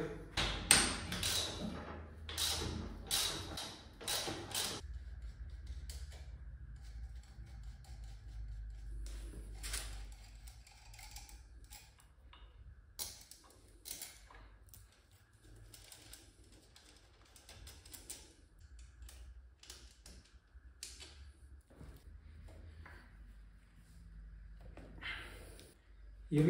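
Hand-tool work on a stripped Honda PCX 125 scooter's engine: a run of loud metal clanks and knocks in the first few seconds, then scattered lighter clicks and taps of tools on bolts and metal parts, with a faint steady high tone behind.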